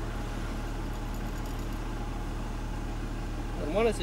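A car engine idling steadily, an even low hum heard from inside the stopped car's cabin.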